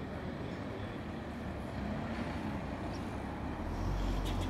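Steady outdoor background noise: a low rumble under an even hiss, the rumble swelling near the end.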